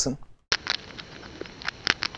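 Sound-effect recording of a mouse nibbling a cracker, pitch-shifted way down, playing back as irregular crunchy nibbling clicks of varying loudness that start about half a second in. The lowered pitch makes it sound like a big scary rat.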